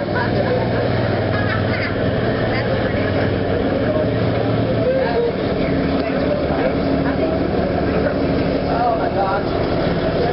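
A vehicle engine running steadily nearby, its low hum shifting about halfway through, with people's voices chattering faintly over it.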